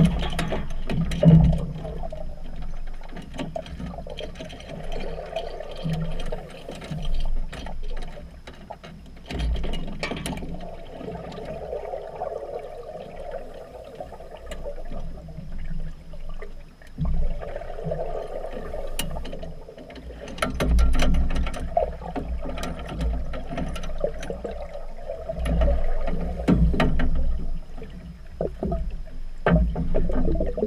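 Underwater sound in a swimming pool, muffled as heard through a submerged camera housing: uneven swells of rushing, gurgling bubbles from scuba divers, with many scattered sharp clicks and knocks.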